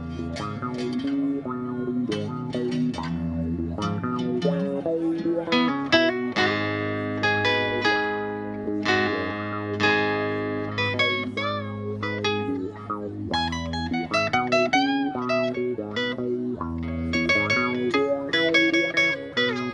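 Live instrumental break on acoustic guitar and electric bass guitar: picked guitar notes ring over sustained low bass notes, with several notes bent in pitch a little past the middle.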